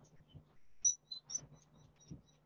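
A bird chirping: a cluster of short, high chirps about a second in, over a faint steady low hum.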